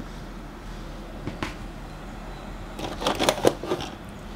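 Hands handling and putting down items in a drawer of art supplies: a single click about a second and a half in, then a short run of clicks and rustles of packaging and small cases near the end.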